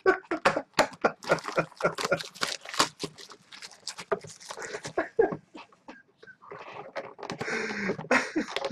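Clear plastic shrink wrap being torn and pulled off a cardboard trading-card hobby box by hand: rapid crinkling and crackling, thinning out briefly before a final burst of rustling near the end.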